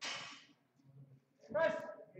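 Shouting around a bench-press attempt: a short hiss at the start, then a man's short, loud shout about one and a half seconds in.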